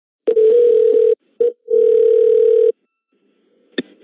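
Telephone line tone heard down a phone call: a steady tone held for about a second, broken off, then held again for another second while the number is redialled. A sharp click comes near the end as the call connects.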